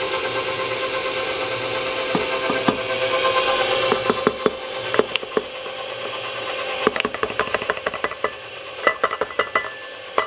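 KitchenAid stand mixer running steadily, its beater turning in a steel bowl as powdered sugar is mixed into cream cheese frosting. Light clicks and knocks come through the motor hum from about two seconds in and grow more frequent in the second half.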